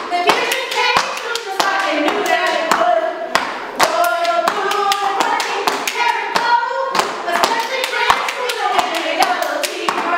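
A group of women stepping: sharp claps and heel strikes on a hard floor, several a second, under women's voices chanting.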